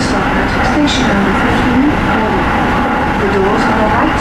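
Tsukuba Express electric commuter train running at speed, heard from inside its rear cab: a loud, steady rumble of wheels on rail with a faint steady tone, and a few short hisses.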